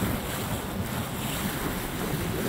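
Steady rush of wind buffeting the microphone over the sound of water streaming past a sailboat's hull as it moves under sail, gusting unevenly with no other distinct events.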